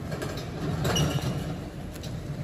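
Automatic vertical form-fill-seal packing machine with a multihead weigher, running with a steady low hum, a few faint clicks, and a brief high tone about a second in.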